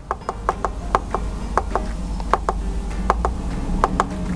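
Repeated button clicks on a Bushnell trail camera's keypad as its menu is scrolled through: a quick, uneven run of small plastic clicks, about four a second.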